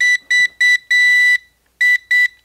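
NVIDIA Shield TV remote beeping from its built-in locator speaker, triggered by the 'Find this remote' feature. It is a high beep at one pitch: three short beeps and a longer one, a pause, then the beeps start again near the end.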